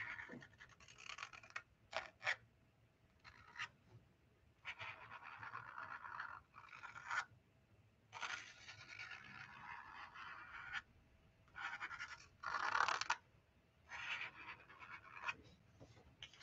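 Black marker tip scratching over watercolour paper as lines are drawn. It comes as a run of separate strokes, some brief flicks and some a couple of seconds long, faint and dry, with the strongest stroke about three-quarters of the way through.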